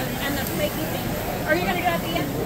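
Indistinct voices of people talking, over steady background noise.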